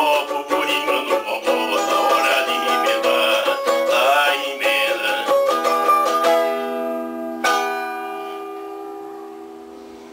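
A small guitar-shaped plucked string instrument strummed in a quick rhythm. About six seconds in, the playing closes on a chord, and a last strum about a second and a half later rings out and fades away.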